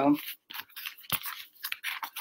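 A string of short, crisp rustles and clicks at an irregular pace, the sound of something being handled.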